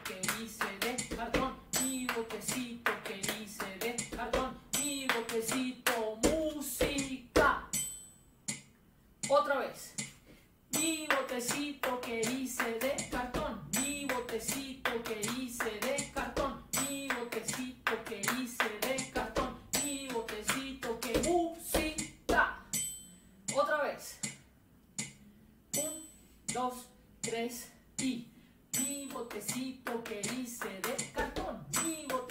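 Body percussion: hands clapping and slapping the thighs in a steady, quick rhythm, with a woman's voice chanting the rhyme over the strokes. The patting breaks off briefly twice, about eight and ten seconds in, and thins out in the last few seconds.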